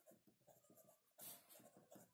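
Faint scratching of a pen writing on paper, a run of short strokes with one slightly louder rasp about a second in.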